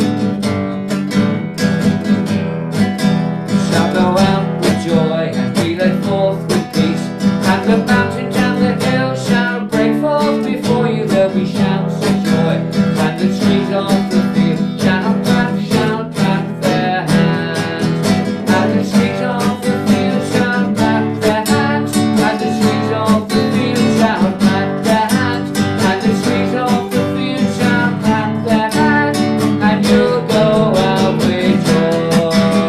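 Acoustic guitar strummed briskly and steadily, accompanying a man singing a worship song.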